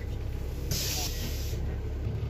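Steady low rumble inside a moving double-decker bus, with a loud burst of hissing lasting under a second about three-quarters of a second in.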